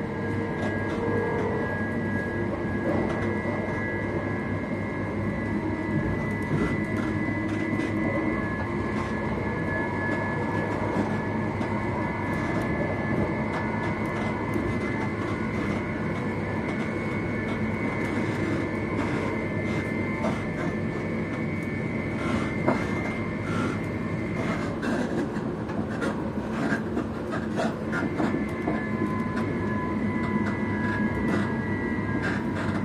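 Moving passenger train heard from inside the carriage: a steady running rumble with a steady high whine over it. Sharp clicks from the wheels crossing rail joints come more often in the last few seconds.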